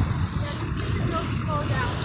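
Steady low rumble of wind on the microphone and ocean surf on the beach, with a few faint snatches of distant voices.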